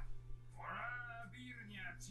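Faint dialogue from the anime episode playing at low volume, a single line of speech starting about half a second in.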